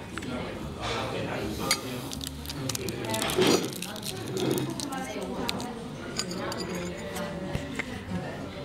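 Voices chattering in a restaurant, with short clinks of a china cup, saucer and cutlery on the table.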